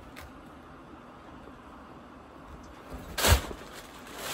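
Low background, then about three seconds in a single loud thump with a short rustle as the heavy plush fabric of an oversized hooded blanket brushes against the microphone.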